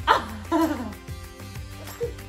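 Two short vocal cries from a person, each falling sharply in pitch, one at the very start and one about half a second in, over steady background music.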